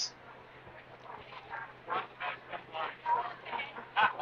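Indistinct voices and background chatter of a crowded convention hall, with no clear words; the voices grow a little louder near the end.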